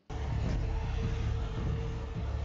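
Episode soundtrack after a scene cut: a steady low rumble with a faint held tone over it.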